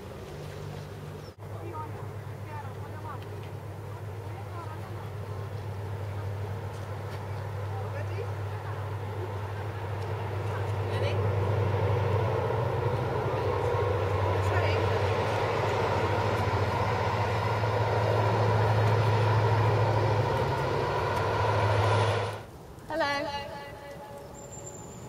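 An engine running steadily with a low hum, gradually growing louder with a rising rush of noise over it, then cutting off abruptly near the end.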